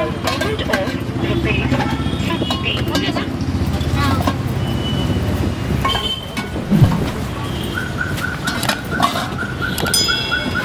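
Chatter of people with clinks and clatters of steel serving vessels and ladles. About eight seconds in, a fast, evenly repeated high chirp starts, about five a second.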